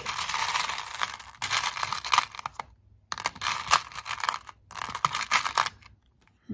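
A hand rummaging through a clear plastic box full of buttons, the buttons clicking and rattling against one another, pausing briefly about halfway through and again for a moment near the end.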